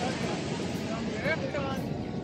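Faint speech over a steady background noise haze, with no distinct non-speech event.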